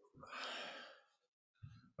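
A man sighs once, a breathy exhale lasting about a second.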